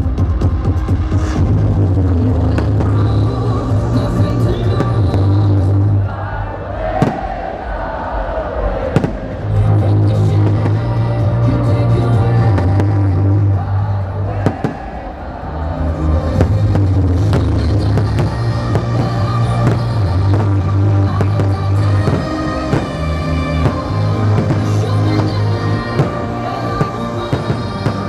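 Loud electronic dance music with a heavy bass line that drops out twice, and fireworks bangs cracking over it, the sharpest about seven, nine and fifteen seconds in.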